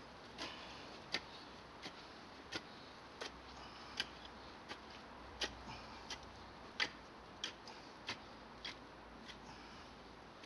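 Twisted-prong hand hoe striking and pulling through the soil bed in a steady rhythm: a faint, sharp tick about every two-thirds of a second.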